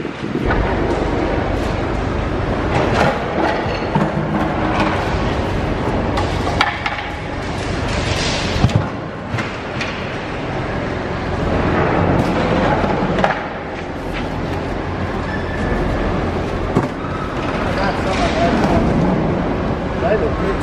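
Busy, steady din of a waste transfer station's tipping hall, with machinery running, a few sharp knocks and thuds, and indistinct voices.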